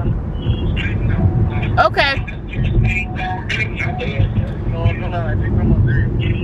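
Voices talking, with a brief loud exclamation about two seconds in, over the steady low rumble of a car's cabin while it drives.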